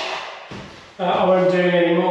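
A man's voice holding one steady, level-pitched hum or drawn-out "um" for about a second and a half, starting halfway in after a quieter moment with a faint click.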